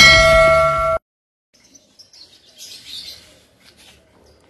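A bright bell-like ding, the notification-bell sound effect of a subscribe animation, rings over loud intro music, and both cut off abruptly about a second in. Then faint outdoor sound with a few bird chirps.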